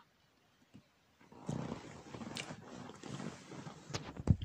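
Handling noise of a phone being moved: rustling and rubbing against its microphone with a few light clicks, starting about a second in after near silence.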